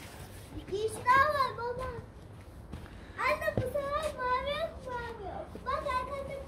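A child's high-pitched voice, drawn out in three phrases of a second or two each, with no words the recogniser could make out.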